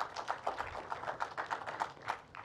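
Scattered audience applause, a quick irregular patter of hand claps.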